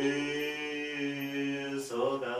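A man singing the long held closing note of a lullaby into a microphone. It is one steady sustained note, with a short break and a fresh note near the end.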